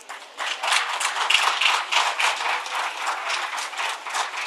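Audience applauding, the clapping swelling about half a second in.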